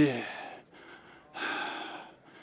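A man's drawn-out cry of pain trails off, and about a second and a half later comes one short, breathy gasp.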